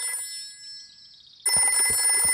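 Old-style dial telephone bell ringing, as a cartoon sound effect. The ringing stops briefly after the start and starts again at about a second and a half: the phone is ringing for an incoming call.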